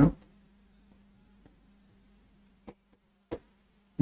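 Chalk tapping on a blackboard, two short taps about a second apart near the end, over a faint steady electrical hum.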